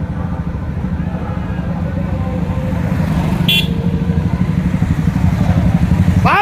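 Motorcycle engines running, growing louder as the bikes come closer, with a brief horn toot about three and a half seconds in.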